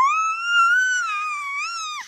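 A kitten's single long meow that rises in pitch at the start, wavers as it is held, and cuts off abruptly at the end.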